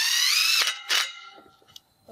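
Cordless drill running a screw into an aluminum railing end bracket with a square-drive bit: a high motor whine that rises in pitch for about half a second and then stops suddenly, followed by a brief second blip of the trigger about a second in.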